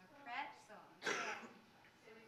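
A person clearing their throat, then coughing once about a second in.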